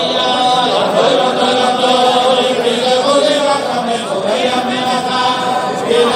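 Many men's voices singing a wordless Hasidic melody (niggun) together on syllables like "na yo yo", in a slow, sustained line.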